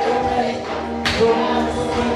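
A group of voices singing a gospel song together, in long held notes. There is one sharp percussive hit about halfway through.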